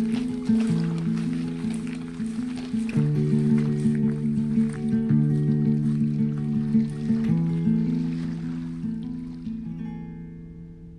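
Instrumental background music, chords changing every two seconds or so, fading out over the last few seconds.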